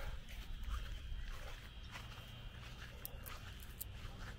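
Quiet outdoor background: footsteps on grass over a low rumble, with a faint steady high-pitched drone and a few light clicks near the end.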